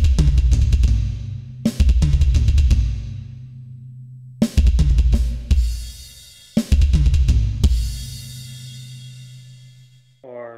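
Electronic drum kit played in four short bursts of very fast fills across the snare and toms, driven by rapid double bass drum strokes from a double pedal. Each burst ends on a crash cymbal that is left ringing out, with gaps of a second or two between them.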